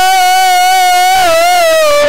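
A man singing a devotional song, holding one long high note with a slight waver, then sliding down in pitch near the end.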